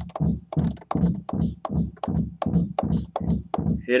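A drum sample in Akai MPC 2.10 software, triggered repeatedly from one pad at a little over three hits a second. Each hit drops quickly in pitch because the pitch-envelope depth is set negative, which gives the drum more heft and body.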